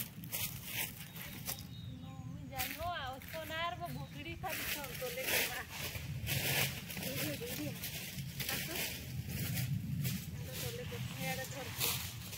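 Leafy cut branches and dry fallen leaves rustling and crackling as they are handled, in short irregular bursts. A wavering voice is heard briefly about three seconds in.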